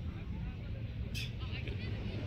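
Beach ambience: a steady low rumble under faint voices of people talking nearby, with a brief high-pitched voice about a second in.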